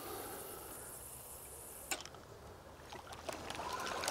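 Faint outdoor ambience, a soft steady hiss, with one sharp click about two seconds in.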